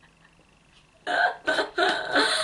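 A woman laughing in short, loud bursts that start suddenly about a second in, three of them close together.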